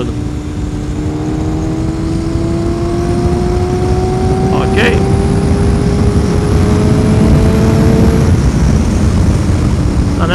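Yamaha FZR600R inline-four engine pulling steadily in gear, its note rising slowly in pitch as the bike gains speed, then fading away about eight seconds in. A heavy rush of wind on the microphone runs under it.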